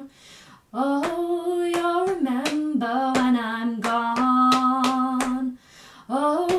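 A woman singing long held notes over a steady hand-percussion beat of sharp hits, about two to three a second. The voice and beat stop briefly at the start and again near the end.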